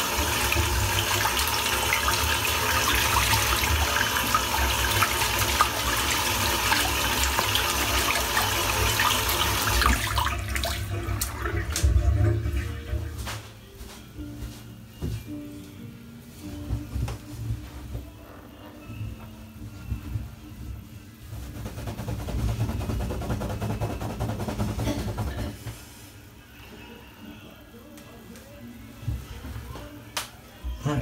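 A tap running into a bathroom sink for about ten seconds, then shut off suddenly. After it come scattered light knocks and clicks as items are rinsed and handled at the basin.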